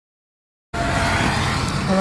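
Dead silence that cuts off abruptly about two-thirds of a second in, giving way to steady car cabin noise: the low rumble of a running car heard from inside.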